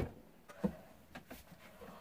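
Faint handling sounds of books being moved on a shelf: a few soft knocks and rustles, the clearest about two-thirds of a second in.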